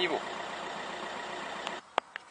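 Volkswagen 1.9 TDI 105 hp diesel engine idling steadily, heard from inside the car, run for a minute after an oil and filter change to circulate the fresh oil before the level is checked. The sound cuts off abruptly near the end.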